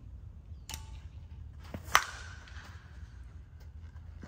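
A one-piece Short Porch Drip Johnny Dykes senior slowpitch softball bat strikes a softball about two seconds in: a sharp crack followed by a ringing ping that fades over about a second. A fainter click comes just before a second in, over a low steady rumble.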